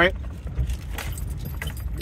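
Steady low rumble, as of a car in motion heard from inside, with light clicks and jingling over it.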